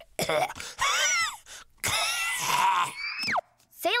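Cartoon cat character's voice laughing and making strained vocal noises while swallowing something, with a quick, steeply falling whistle-like glide a little after three seconds.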